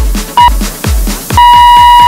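Electronic dance music with a steady kick-drum beat, overlaid by workout-timer beeps: a short beep about half a second in, then a long beep starting near the end. This is the final-second countdown signalling the end of the exercise interval.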